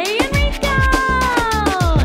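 A cat's drawn-out meow that rises and then slides slowly down in pitch, mixed into upbeat music with a steady drum beat.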